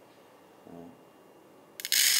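A small handful of dry rice grains dropped by hand into a stainless steel pot: a dense, crackly rattle of grains hitting metal that starts suddenly near the end.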